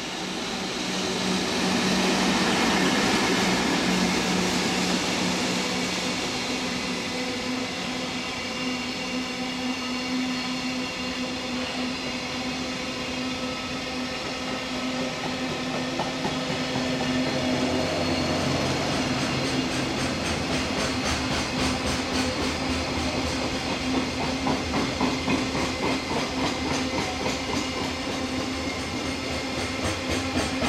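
EF65 electric locomotive passing at speed, loudest a few seconds in, followed by a long string of container wagons rolling by. Later the wheels clatter over rail joints in a steady, even rhythm.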